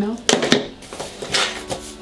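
Rummaging through a handbag: small hard items clicking and knocking together, two sharp clicks in the first half-second, then rustling and a few softer knocks.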